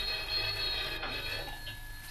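A bell-like signal ringing for about a second and a half, with a fainter single tone near the end, over the hum and hiss of an old broadcast recording.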